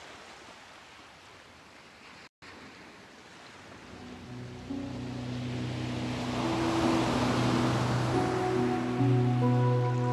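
Soft ocean surf, a momentary gap in the sound, then a new-age track begins. Held, sustained chords come in about four seconds in and build, while a wash of surf swells beneath them.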